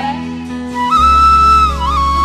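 Bamboo side-blown flute (suling) playing a melody line with band accompaniment: about a second in it comes in on a long held high note, dips briefly and settles on a slightly lower note, over a steady bass.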